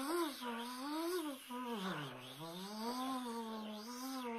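A man's voice holding one long wordless vocal sound, an impressed exclamation, its pitch wavering up and down and dipping lowest about two seconds in.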